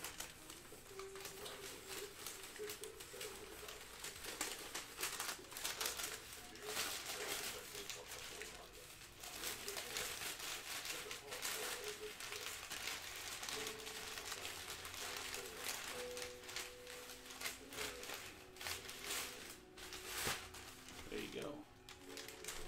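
Brown paper wrapping and a black plastic bag rustling and crinkling in irregular bursts as they are handled.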